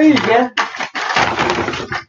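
A woman's voice briefly, then about a second and a half of steady rustling handling noise as small metal spoons and their bag are handled.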